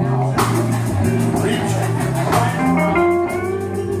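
Live blues band playing: electric guitar over a drum kit, with a low line that steps from note to note.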